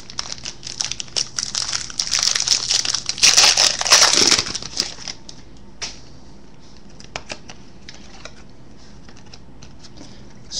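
A trading-card pack wrapper being torn open and crinkled, a dense crackling for about five seconds that is loudest three to four seconds in. After that, only a few light clicks of cards being handled.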